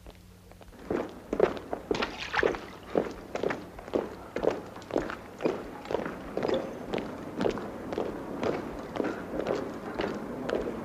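Soldiers' boots marching in step: a steady cadence of about two footfalls a second, starting about a second in.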